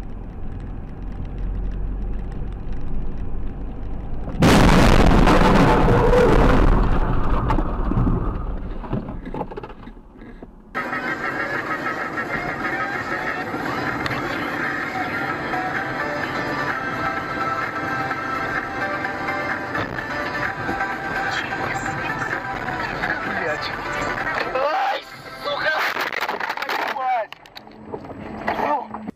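Low car road noise heard inside the cabin. About four seconds in comes a sudden, very loud noise burst that fades over several seconds, of the kind a dashcam records in a collision. From about eleven seconds on, music plays steadily.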